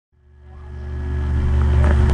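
A steady low hum with light hiss, fading in from silence over the first second and a half.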